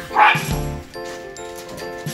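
A small dog barks once, briefly, a quarter of a second in, louder than the background music that plays throughout with a steady beat.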